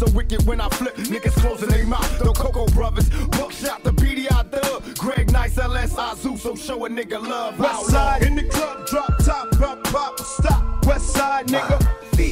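Hip hop track playing: a rapped vocal over a beat with deep, heavy bass hits and regular hi-hat ticks.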